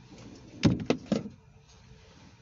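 Three quick knocks, about a quarter second apart, inside a parked car's cabin.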